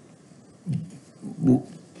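A man's voice making two short, low murmured sounds under a second apart, like a hum or grunt mid-sentence.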